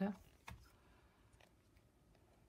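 Quiet handling of a picture book being paged through: one sharp click about half a second in, then a few faint ticks as its pages are turned.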